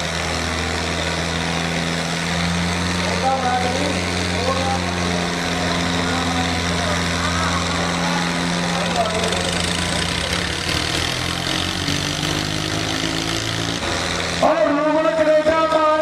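Diesel tractor engines pulling hard against each other in a tractor tug-of-war, a steady low drone. They are working at full load, with black smoke coming from the exhausts. Near the end a loud man's voice cuts in over them.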